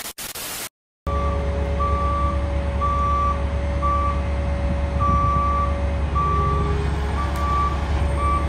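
A short burst of TV-static hiss that cuts to silence. Then a heavy tracked machine's diesel engine runs steadily while a backup alarm beeps about once a second.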